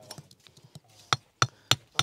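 Hammer striking a stone to chip a notch into it: a few faint taps, then sharp strikes about a third of a second apart from about a second in, growing louder.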